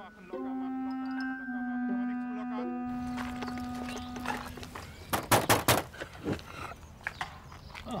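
A short musical bridge of held notes ends about three seconds in. A little past halfway come a few quick, sharp knocks on a caravan door.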